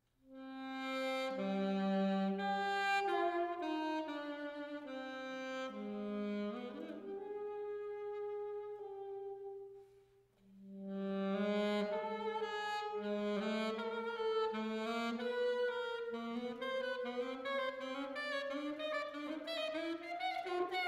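Unaccompanied saxophone solo: a single melodic line of held and stepping notes begins out of silence, breaks off briefly about ten seconds in, then returns in quicker, running notes.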